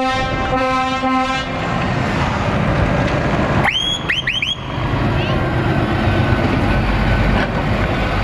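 Scania R450 truck's horn sounding a blast of about a second, then three quick rising whistles, then the truck's 13-litre straight-six diesel running as it pulls past close by.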